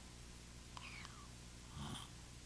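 A quiet pause in a man's talk into a lectern microphone: faint room tone with a steady low hum, a faint falling squeak about a second in, and a soft breath near the end.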